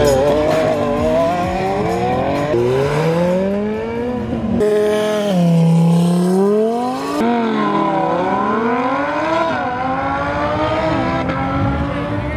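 A high-performance car engine accelerating hard. Its pitch climbs and drops back sharply at each gear change, several times over.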